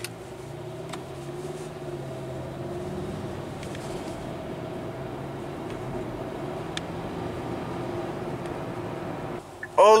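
Car engine and road noise heard inside the cabin while driving, a steady hum with a low drone.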